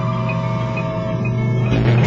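Ambient trailer score: a steady low drone under held tones, with short high notes repeating every half second or so. It swells louder near the end.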